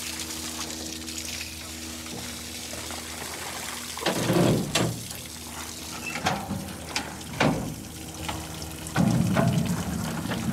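Water pouring and splashing from the drain outlet of a hatchery fish-tank truck as the last trout are flushed out, over a steady low hum.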